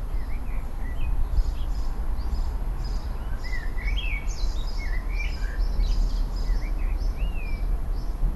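Small birds singing, a string of short chirps and quick rising and falling whistled notes, over a steady low rumble.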